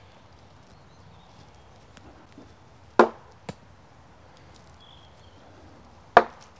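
A wooden ball strikes a large carved wooden pot with a sharp, hollow knock about three seconds in, followed half a second later by a lighter second knock.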